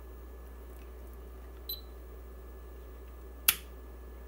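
A single sharp click about three and a half seconds in, from the toggle switch of an Anatek 50-1D bench power supply being flipped, over a low steady hum.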